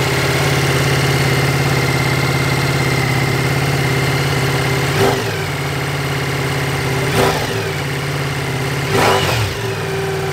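Ducati Multistrada V4 S's V4 engine idling through its Sport Pack Akrapovic slip-on silencer, with three short throttle blips that rise and fall, about five, seven and nine seconds in.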